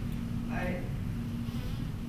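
Steady low electrical buzz in the lecture-hall recording, with a faint snatch of a man's voice about half a second in.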